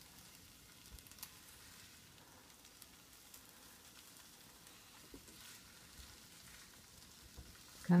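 Scrambled eggs sizzling faintly and steadily in a frying pan, with a few light clicks in the first second or so.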